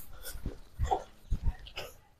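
A few faint, short animal calls, spaced apart: one about a second in, another near the end.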